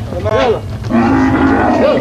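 A dromedary camel bellowing as it is pushed up into a truck's cargo bed: a short call, then a longer held one about a second in.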